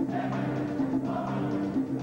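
Wind band of woodwinds and brass playing live, sustained notes moving from chord to chord over a steady pulse.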